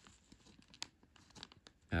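Ballpoint pen scratching faintly on paper as a mark is drawn, with one sharper tick a little under a second in.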